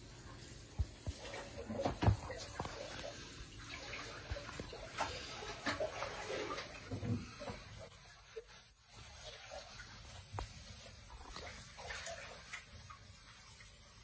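Faint running water in a home aquarium, with scattered small knocks and clicks.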